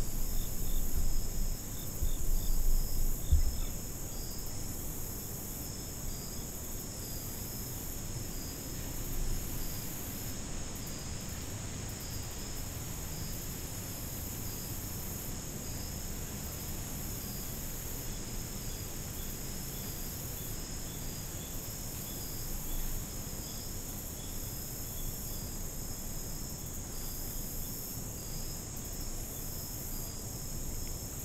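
Steady chorus of insects such as crickets, several high, fast-pulsing trills layered together, with a low rumble underneath that is loudest in the first few seconds.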